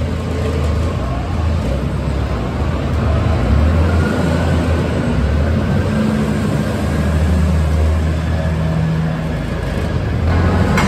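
JCB TM310S pivot-steer loader's diesel engine running under load, with a deep steady hum as the bucket is pushed into a pile of beet and lifted.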